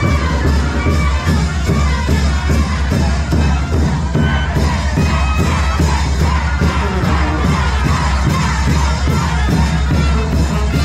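A large crowd cheering and shouting over loud live Mexican banda music, which has a heavy bass and a steady, even beat.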